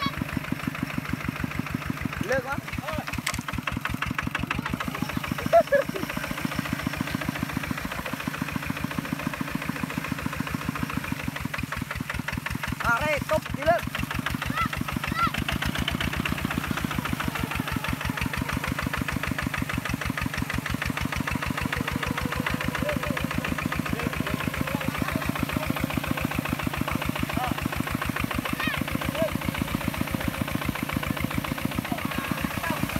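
Kubota walking tractor's single-cylinder diesel engine running steadily with an even, rapid beat while it drives its wheels in deep paddy mud. Short shouts break in twice, a few seconds in and near the middle.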